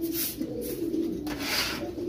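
Fantail pigeons cooing in a low, wavering, rolling coo, with some scratchy rustling over it.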